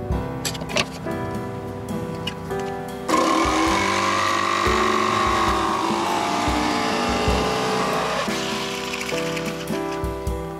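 A handheld power saw cutting through a sheet of plywood, starting about three seconds in and stopping about eight seconds in, louder than the background music that plays under it.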